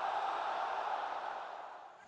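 Noise from a very large audience, a wash of many people at once that swells and then fades away.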